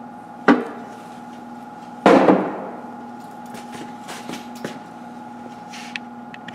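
Knocks from handling parts on a bare engine block: a sharp knock about half a second in, a louder clunk with a short ring about two seconds in, then a few light clicks, over a steady hum.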